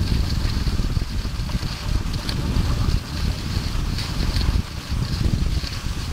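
Wind buffeting the microphone of a skier being towed on skis, a steady low rumble with a faint higher hiss that pulses unevenly.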